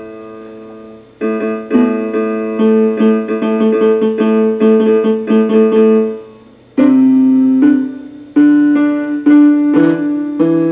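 Electronic keyboard played in chords on a piano sound. A held chord dies away, then chords are struck in quick repetition for about five seconds and fade out, and after a short gap the playing resumes with slower chord changes about once a second.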